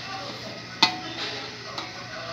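A sharp click about a second in, then a fainter click near the end, over a low background.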